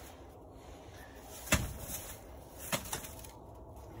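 Two sharp slaps about a second apart, the first and louder one about a second and a half in, with a few smaller taps: a freshly landed trout flopping on the ice beside the fishing hole.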